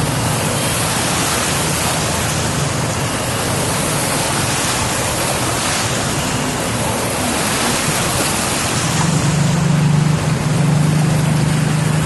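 Motor vehicles driving through floodwater: a steady wash of churning, splashing water with engines running underneath. An engine hum grows louder about nine seconds in, as a vehicle comes close.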